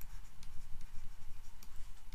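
A pen writing a word by hand in quick strokes, with faint scratches and light ticks over a low steady hum.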